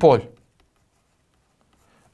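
A man's voice says one word, then near silence with only faint scratching of a stylus writing on a tablet.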